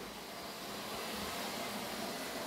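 Steady faint hiss of room tone with no distinct sound event.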